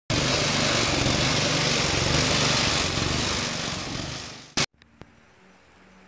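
Lawn tractor engine running steadily, fading out about four and a half seconds in, followed by a short click and then quiet.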